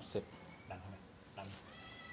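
A few brief spoken words, and near the end a faint, high-pitched call from a small animal.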